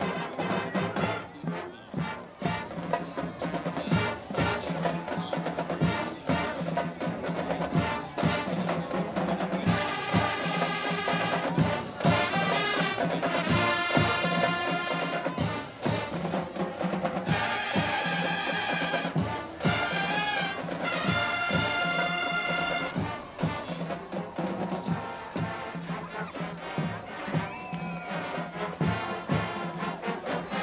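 Brass band with drums playing: a steady drum beat throughout, with long held brass chords in the middle.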